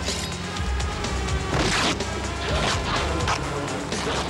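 Action-film soundtrack: music over a low rumble, broken by several crashing hits, the loudest lasting a moment between one and a half and two seconds in.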